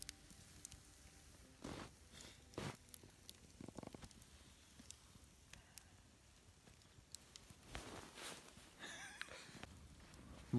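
Faint crackling of a small pine-wood campfire: scattered quiet sharp ticks, with a few short soft rustling noises.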